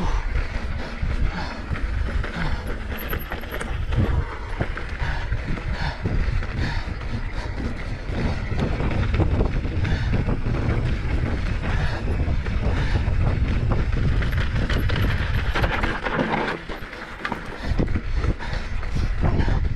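Downhill mountain bike ridden fast over a dry dirt and gravel trail: steady wind rush on the microphone, with tyre noise and constant small knocks and rattles from the bike over the rough ground. The wind eases briefly near the end.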